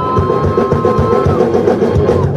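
Live rock band playing loudly: drum kit and electric guitar, with two long held high notes that end about one and a half seconds in.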